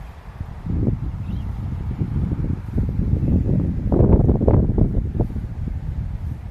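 Wind buffeting the phone's microphone outdoors: irregular low rumbling gusts that swell about a second in and are strongest around four seconds in.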